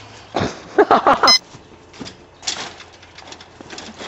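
Scuffs, knocks and rustles of someone clambering over a chain-link fence, with a short vocal sound about a second in.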